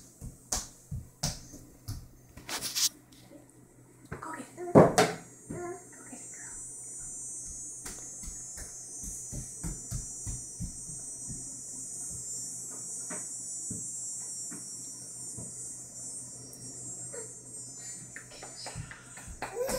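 Toddler playing with a plastic frisbee on a hardwood floor: scattered light taps and knocks, and a short loud child's vocal sound about five seconds in. A steady high hiss sets in soon after and runs until near the end.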